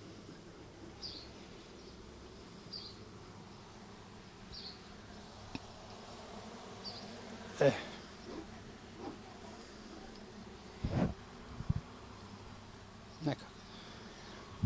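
Honey bees buzzing faintly around an opened mating nuc while its frames are worked, with a couple of low knocks about eleven seconds in.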